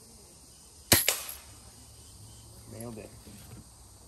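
Daisy Red Ryder spring-air BB gun fired once, a sharp crack about a second in, followed a split second later by a fainter tick as the BB hits a tin can.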